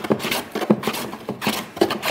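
Block plane shaving cedar strip planks in short diagonal strokes, about three a second, fairing the hull by taking down the high spots where the planks aren't quite level.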